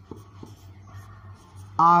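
Marker pen writing on a whiteboard: faint, short scratchy strokes over a steady low hum. A man's voice cuts in near the end.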